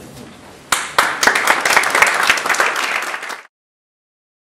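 Audience applauding, starting about a second in and cut off suddenly after a few seconds.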